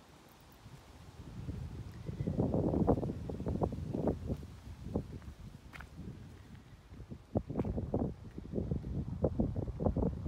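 Wind buffeting the microphone, a low rumble that comes in about a second and a half in and swells and fades in gusts, with many irregular low thumps through it.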